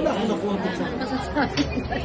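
Chatter of several voices talking over one another in a busy dining room, with a short knock or clink about one and a half seconds in.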